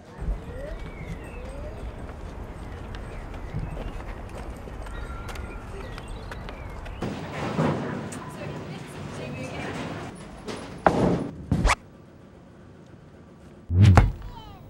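A low rumble, then two sharp thuds about eleven seconds in, and a heavy, loud low thud at the very end.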